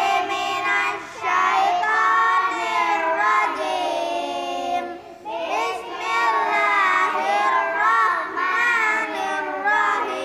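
A group of young children reciting the Qur'an together in a melodic chant. The recitation breaks briefly for breath about a second in and again halfway through.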